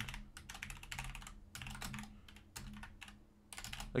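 Typing on a computer keyboard: a quick, uneven run of key clicks, easing off briefly a little after three seconds in.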